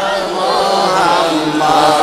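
A man's solo voice chanting a Bengali devotional song in praise of the Prophet, drawing out a long, wavering note.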